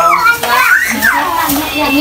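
A group of children talking and shouting over one another in loud, high-pitched voices.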